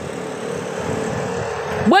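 Street traffic: a motor vehicle running past with a steady rush and a faint hum, until a voice breaks in at the end.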